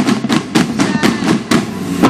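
Marching band drums, snare and bass drums, struck in a rapid run of sharp hits, about five a second.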